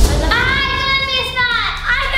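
A child's long, high-pitched vocal cry, falling slightly in pitch, then a shorter rising call near the end.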